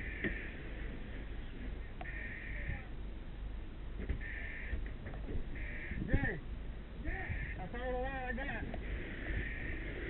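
Short electronic beeps repeating about every one and a half seconds, over a steady low rumble, with a brief wavering shout about eight seconds in.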